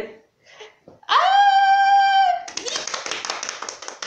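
A woman's high scream, its pitch sliding up and then held for about a second. It breaks off into a fast patter of hands slapping her body, imitating running footsteps.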